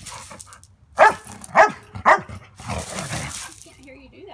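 Dog barking in play, three sharp barks in quick succession about half a second apart, followed by about a second of rough scuffling noise.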